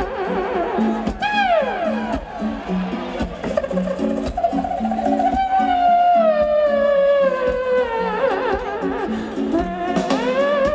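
Live band music: a wordless lead line of long, sliding notes over a repeating low bass figure, with one quick rise-and-fall about a second in and a long slow downward glide in the second half.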